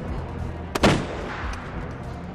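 A single pistol shot a little under a second in, with a short echo trailing off, over a low, steady dramatic music score.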